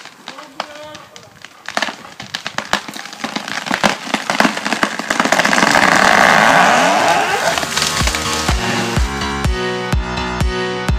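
A large conifer going over after its felling cut: the hinge wood cracks and splinters in a quickening run of snaps, then a loud rushing crash as the crown comes down through the branches. Music with a steady bass beat comes in about eight seconds in.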